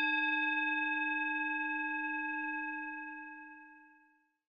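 A single bell-like chime note, sounding as several steady tones at once, rings on and fades out shortly before the end.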